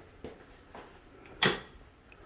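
An interior door swinging and knocking shut once, sharply, about one and a half seconds in, with a couple of faint clicks from the door hardware before it.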